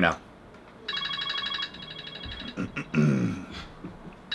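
Phone ringtone: a burst of rapid, pulsing electronic tones a little under a second long, starting about a second in. A man clears his throat near the end.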